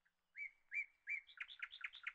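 A small bird singing faintly in the background: three separate chirps, then a quicker run of chirps in the second half.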